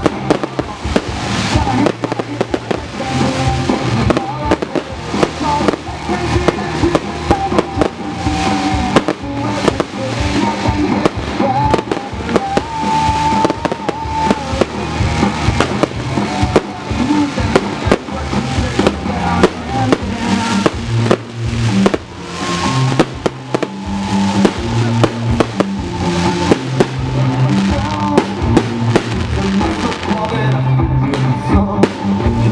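Fireworks display: aerial shells bursting one after another in a dense, continuous run of bangs and crackles, with music playing underneath.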